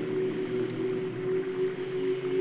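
Singing crystal bowls sounding together in a sustained drone: several steady tones held at once, one mid-pitched tone the strongest, with no new strike.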